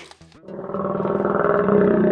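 A rough, growling animal roar sound effect. It swells in about half a second in and holds steady.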